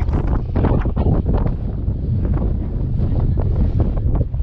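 Wind buffeting the camera microphone, a loud, steady low rumble with uneven gusts.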